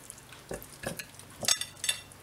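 Hands rubbing sesame oil into the skin of a raw whole chicken: a few soft, wet squelching sounds.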